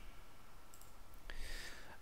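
A couple of faint, short clicks over a quiet low room hum, the clearest about 1.3 s in.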